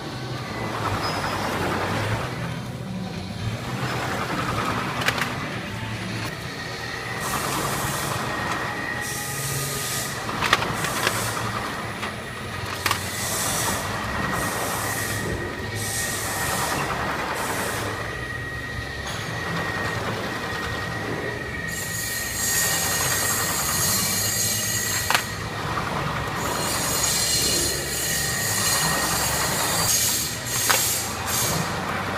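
Automatic powder tray filling and sealing machine (SP-3503B) running, its plastic slat conveyor carrying sealed foil trays with a steady low rumble and a faint high whine. Short bursts of hiss come about once a second, thicker near the end, with a few sharp clicks.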